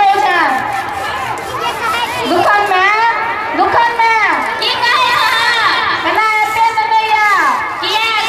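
Men's voices delivering Maithili stage dialogue into handheld microphones, the words running on without a break.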